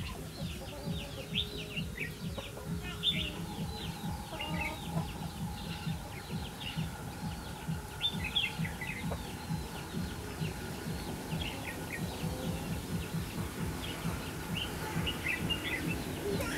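Red-whiskered bulbuls calling: clusters of short, quick chirping notes, thinning out now and then, over a low pulsing background.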